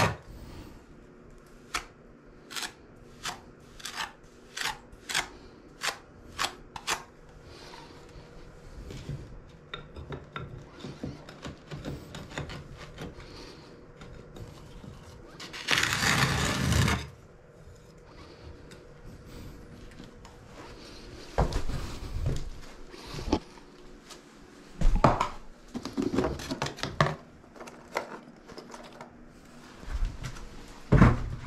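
A metal scraper blade scraping the shower wall beside a tiled niche in short, even strokes, about two a second, for the first several seconds. About halfway through comes one louder scrape lasting over a second, and later a few knocks and some clatter.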